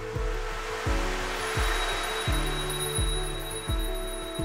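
Several woven hand bells shaken together, a soft rustling rattle that swells and then fades out near the end, over background music with a steady beat.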